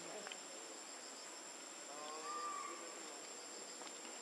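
A steady, faint insect chorus with a constant high whine, typical of forest insects such as cicadas or crickets. A short, wavering pitched call rises over it about two seconds in.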